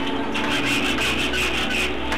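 Hand rasp or file worked over wood in a few strokes, each about half a second long.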